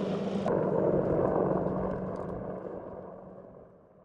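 Outdoor field noise: a steady low hum under a noisy rush, fading out over the last second or so.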